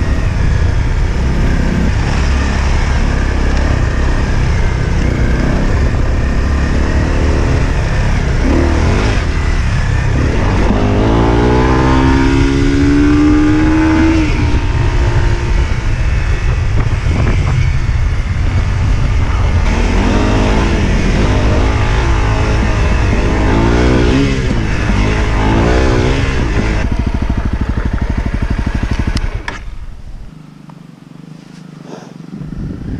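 Honda CRF dual-sport motorcycle's single-cylinder four-stroke engine running under way, heard from on board. It rises in pitch as it is accelerated, about ten seconds in and again past the twenty-second mark. It drops away as the bike slows to a stop at the end.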